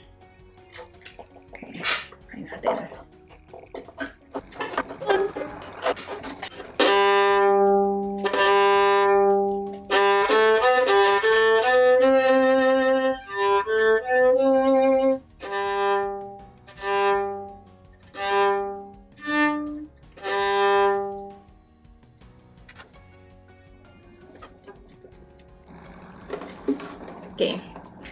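Acoustic violin bowed to test its tone after the sound post has been nudged slightly toward the bass side, meant to give fuller low notes: two long low notes, a quicker run of notes, then a series of short separate notes, stopping about three-quarters of the way in. Before the playing, a few seconds of light knocks and clicks as the violin and tool are handled.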